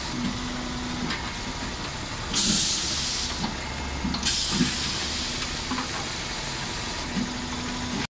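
Hydraulic colour tile press machine running: a steady machine drone with a low hum that comes and goes, and a few light knocks. Two loud hissing bursts come about two seconds in and again about four seconds in.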